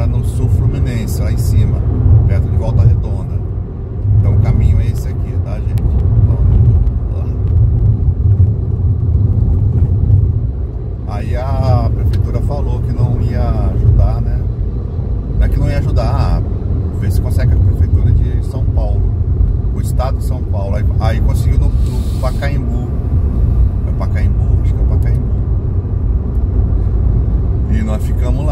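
Steady low road and engine rumble heard inside a moving car's cabin at highway speed.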